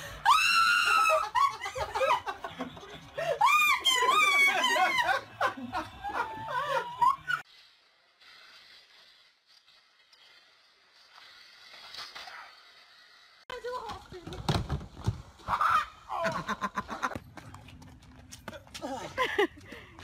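A woman shrieking and laughing in high, swooping cries for about seven seconds. After a quieter stretch, a few heavy thuds come about halfway through, followed by voices.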